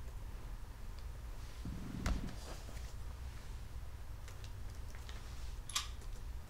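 A low steady hum with no speech, broken by a soft thump about two seconds in and a single short, sharp click near the end.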